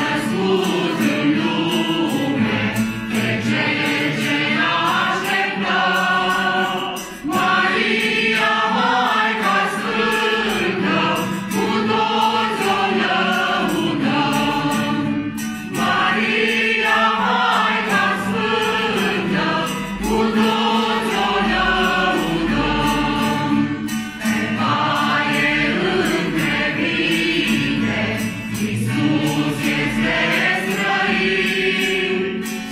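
Mixed group of men and women singing a Romanian Christmas carol (colind) together, accompanied by a strummed acoustic guitar. The singing goes in phrases of roughly eight seconds with brief breaks between them.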